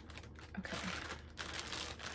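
Rustling and crinkling of packaging wrap as it is pulled off a model horse. The crinkling is loudest about half a second in and goes on for nearly a second.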